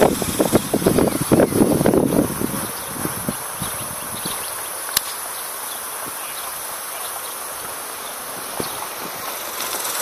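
A single sharp crack of a golf club striking a teed ball, about five seconds in, over a steady high insect buzz. A muffled low rumble fills the first couple of seconds.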